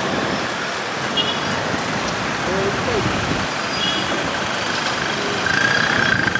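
Steady road traffic noise: the even hiss and rumble of vehicles passing on a city street.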